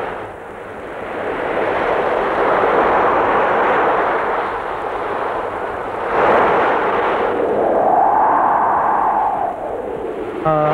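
Ocean waves breaking on a beach, a continuous surf wash that swells and ebbs, with a stronger surge about six seconds in. Near the end a faint tone rises and falls over the surf.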